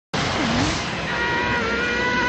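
Anime energy-aura power-up sound effect: a loud, steady rushing roar, joined about a second in by a high, steady whine.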